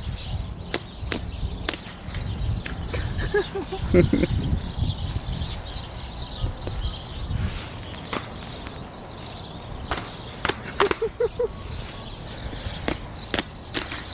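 Ostriches pecking with their beaks at a wristwatch on a forearm and at the wire fence: irregular sharp clicks and taps. Handling rumble runs underneath, with a couple of short murmured voice sounds, about four seconds in and near eleven seconds.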